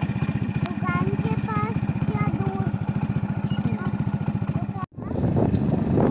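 Motorcycle engine idling with an even, fast beat, short high chirps sounding over it. About five seconds in it cuts to the motorcycle riding along, louder, with wind buffeting the microphone.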